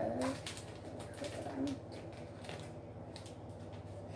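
Soft rustling and clicking of a small plastic packet being handled and opened, with a brief low hum from a child's voice about a second and a half in.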